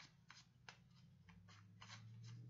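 A deck of reading cards being shuffled by hand: faint, irregular flicks and snaps of the cards.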